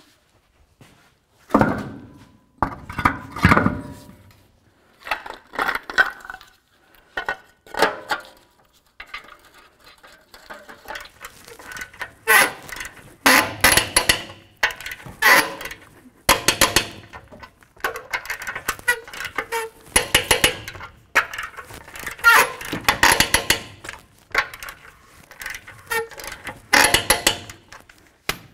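A wheel knocking onto the hub studs about two seconds in, then lug nuts being run down with a ratchet wrench: metallic clinks and repeated bursts of rapid ratchet clicking, one nut after another.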